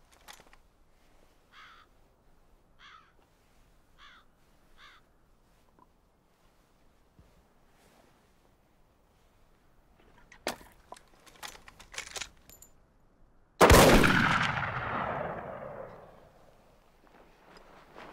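A single loud gunshot about three-quarters of the way in, echoing and dying away over about three seconds. Before it, a bird calls faintly four times and there are a few sharp clicks and scuffs.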